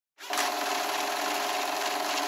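Sound effect of a film projector running: a steady mechanical whirr and rattle with a constant hum, starting abruptly just after the opening moment.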